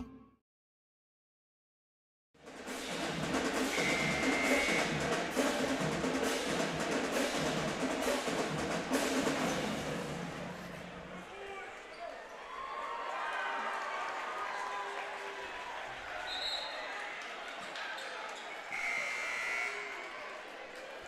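After a moment of silence, a high school pep band's drumline plays a fast cadence of bass and snare drums over crowd noise in a gymnasium. About eleven seconds in, the drumming stops, leaving the murmur of the crowd.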